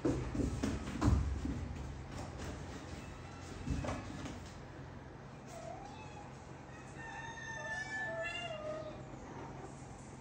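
A few low thuds in the first seconds and again about four seconds in. In the second half comes a drawn-out animal call that bends in pitch, with a higher held note above it.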